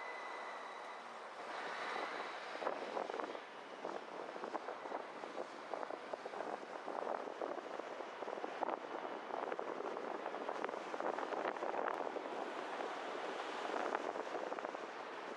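Car pulling away from a stop and driving on, with road noise and wind buffeting the microphone, rough and fluttering. A steady high tone sounds in the first second, then stops.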